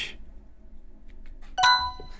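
A game-show buzz-in chime: one bright electronic ding about three-quarters of the way through, starting sharply and ringing out over about half a second, as a contestant presses his answer button.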